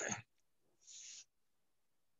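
Near silence in a pause of a man's talk over a noise-suppressed call, with a brief clipped voice sound at the very start. A short soft hiss comes about a second in.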